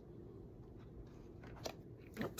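Faint rustling of paper as handmade journal pages are handled and folded, with one soft tap near the end.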